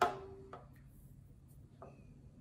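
A wooden knock from a violin being handled, with the instrument ringing briefly in one tone for about half a second, followed by a few faint small clicks.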